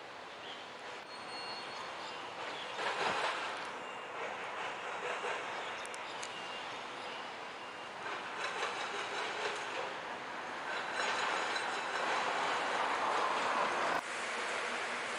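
Street traffic: vehicles passing on the road, swelling about three seconds in and again over the last few seconds.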